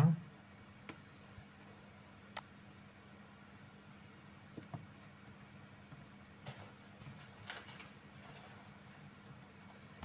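Quiet room tone with a faint steady hum and a few soft, scattered computer mouse clicks as lines are drawn and moved on screen.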